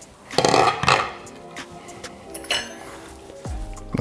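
Glass slow-cooker lid being set down with a clatter about half a second in, then a short light clink a couple of seconds later, over quiet background music.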